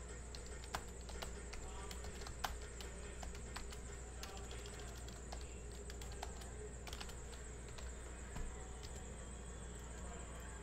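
Faint, irregular clicks and taps of small objects being handled on a desk, a few louder than the rest, over a steady low hum.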